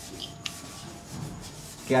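Brush scrubbing acrylic paint onto stretched canvas: a dry, scratchy rubbing, with one short click about half a second in.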